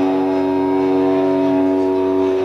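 Electric guitar chord held and ringing out steadily at the close of a live rock song, amplified through the PA. It sounds as one unbroken, unchanging sustained tone.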